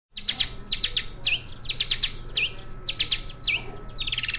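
Mexican free-tailed bat's courtship song: short, high chirps in quick downward sweeps, grouped into phrases. Each phrase ends in a V-shaped swooping note, and the phrases repeat about once a second.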